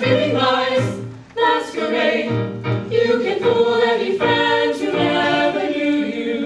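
Mixed-voice ensemble singing a show tune in harmony, with a brief dip in level a little over a second in.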